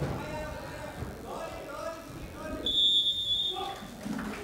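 Voices shouting around the cage, then about three-quarters of the way in a loud, steady, high-pitched signal tone lasting about a second marks the end of the round.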